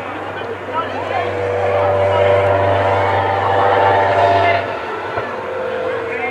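A motor vehicle's engine running with a low, steady hum. It grows louder from about a second and a half in, then cuts off abruptly just before five seconds.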